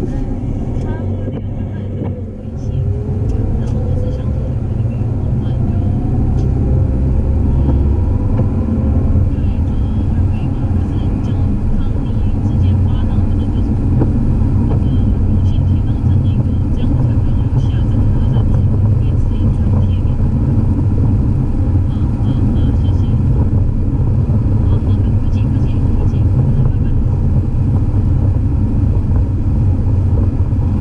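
Car driving, heard from inside the cabin: a steady low engine and tyre rumble on a wet, slushy road. The engine pitch rises for several seconds a few seconds in as the car accelerates.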